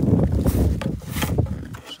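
Small wooden door on a timber enclosure being unlatched and swung open, wood scraping and knocking in short rasps about half a second and a little over a second in. A low rumble of wind and handling on the microphone is the loudest part.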